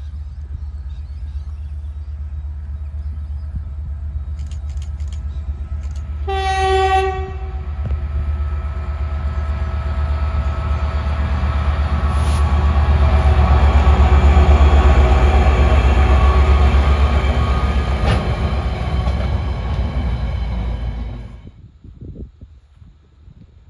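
Diesel locomotive WRA004 hauling a short grain train: a low engine rumble builds as it approaches. One horn blast of about a second and a half sounds about six seconds in, then the engine and wagons pass close and loud. The sound cuts off suddenly near the end.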